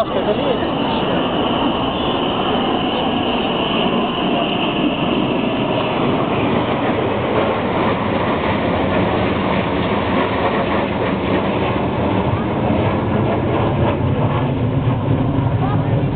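Military jet aircraft flying low overhead in a parade formation: a loud, steady jet roar with a high engine whine over the first several seconds and a deeper rumble building near the end.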